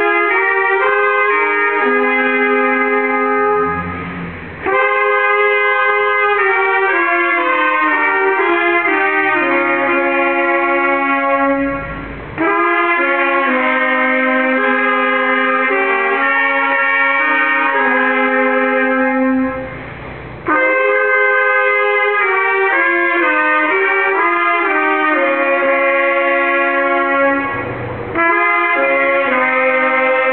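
Small brass ensemble led by trumpets playing slow phrases of held chords in several parts, each phrase ending in a short breath break, about every eight seconds.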